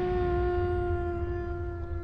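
A werewolf's wolf-like howl: one long held note, dropping slightly in pitch and fading near the end, over a low rumble.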